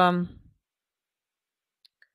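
A woman's voice trailing off on a drawn-out word, then dead silence through a headset microphone, broken only by a faint click near the end.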